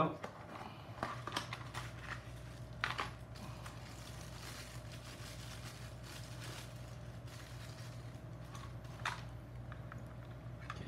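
Faint crinkling of a small clear plastic parts bag being handled and opened, with a few light handling clicks about a second in, near three seconds and near the end, over a steady low electrical hum.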